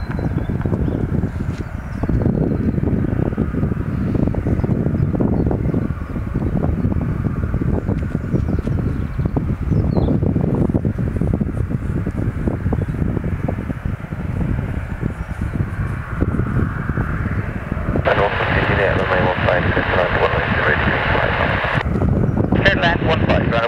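Wind buffeting the microphone in gusts, over the distant engines of a twin-engine jet airliner taxiing onto the runway. About eighteen seconds in, a louder, higher rushing sound sets in.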